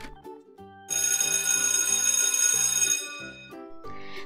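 Alarm clock bell sound effect ringing for about two seconds, starting about a second in and then fading out, signalling that the countdown timer has run out. Light background music plays under it.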